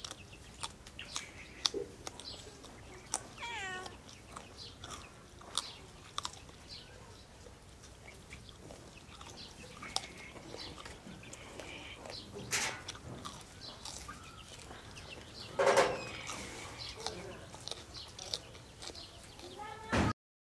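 Close-up eating by hand: wet chewing, lip smacks and mouth clicks as mouthfuls of rice and fish are eaten. Animal calls sound in the background, a quick run of short falling calls a few seconds in and one louder call about three quarters of the way through.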